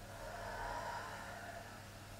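A person's slow, audible exhale that swells and fades over about a second and a half, above a faint steady low hum.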